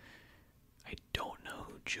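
Close-miked whispered speech from a man, starting about a second in after a brief pause.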